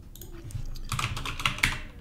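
Typing on a computer keyboard: a quick run of key clicks that starts shortly in, as a word is typed.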